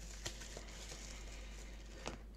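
Faint handling sounds of a small parts packet being opened: light rustling with a few soft taps, the clearest about a quarter second in.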